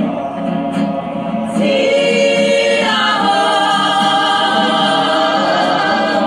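A Māori kapa haka group of men and women singing together on held notes, growing louder about a second and a half in and moving to a new chord around three seconds in.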